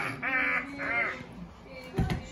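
A toddler's two short, high squealing laughs, each rising and then falling in pitch.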